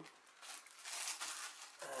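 Plastic zip-lock bag crinkling faintly as it is handled and its zip seal is pressed shut.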